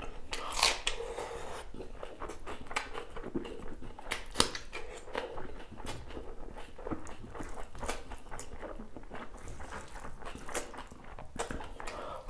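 Close-up eating sounds: biting and crunching into a raw red onion, then chewing with many sharp wet smacks and clicks, the loudest just after the start and about four seconds in.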